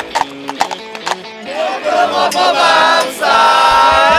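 A horse's hooves clip-clopping on the road for about the first second, over background music. From about a second and a half in, a group of voices sings out loudly.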